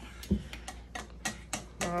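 A utensil stirring cake batter in a stainless steel mixing bowl, clicking against the metal in a quick, irregular run of light clicks, with one dull thump about a third of a second in.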